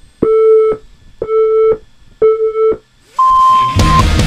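Electronic race-start countdown: three identical beeps a second apart, each about half a second long, then one higher-pitched 'go' tone. Loud rock music comes in just before the end.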